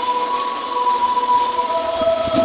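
A steady drone of held tones through the church sound system, with a new, slightly higher tone coming in near the end, over a light hiss.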